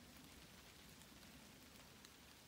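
Near silence: a faint, steady outdoor background hiss.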